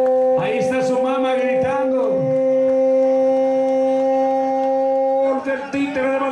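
A horn sounding one long, steady, unwavering note for over five seconds, then cutting off about five seconds in.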